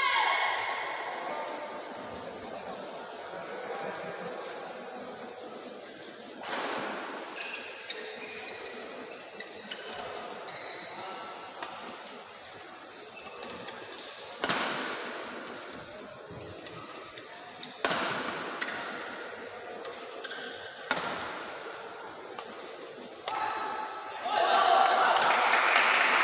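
A badminton rally: rackets strike the shuttlecock with sharp cracks a few seconds apart, each ringing briefly in the hall, under low background voices.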